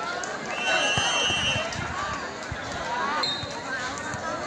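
Spectators' voices chattering around an outdoor volleyball court. A referee's whistle blows one steady, high blast of about a second, starting about half a second in, and a brief higher peep sounds near the end.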